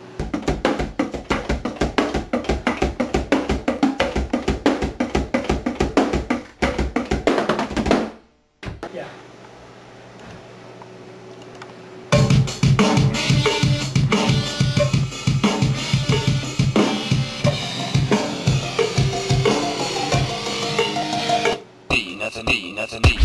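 Drum kit played in a fast, steady pattern of rapid strokes for about eight seconds, stopping abruptly. After a few quieter seconds, louder full-band heavy rock music with drums and sustained pitched instruments comes in about twelve seconds in.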